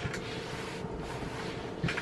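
Hot steam iron sliding over damp cotton muslin: a soft, steady hiss as the sprayed water sizzles under the soleplate.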